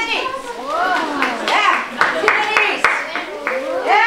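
Several children's voices making long whooing wind noises that slide up and down in pitch, with bursts of hissing in the middle, as storm sound effects.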